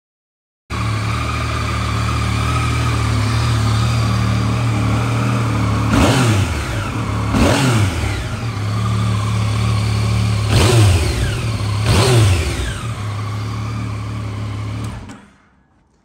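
A 2016 Yamaha Tracer 900's 847 cc three-cylinder engine idles in neutral. It is revved briefly four times, in two pairs, each rev rising and falling back to idle. The engine sound cuts in about a second in and fades out near the end.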